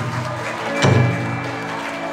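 Kawachi ondo band accompaniment at its close: one deep drum stroke nearly a second in, ringing out low, over sustained instrument notes.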